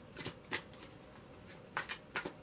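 Tarot cards being handled as more are drawn from the deck: a few short, faint card flicks and slaps.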